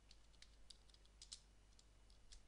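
Faint keystrokes on a computer keyboard as a word is typed: short, uneven clicks, several a second, over a low steady hum.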